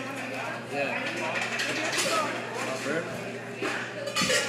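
Indistinct chatter of several voices with general fast-food counter noise, over a steady low hum.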